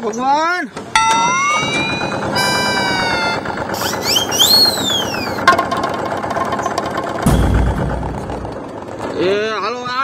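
Cartoon-style comedy sound effects, whistle tones sliding up and then down with a quick up-and-down swoop midway, laid over the fast, steady rattle of a small Mahindra Jivo tractor's diesel engine running. A deep low rumble swells briefly near the end.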